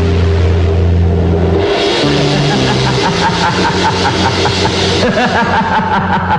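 Film soundtrack effect for a magical materialisation. A low held drone gives way about two seconds in to a loud hissing whoosh with a rapid flutter, which breaks into rhythmic music near the end.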